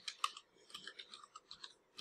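Faint clicking of computer keyboard keys as a word is typed, a quick run of short, light key taps.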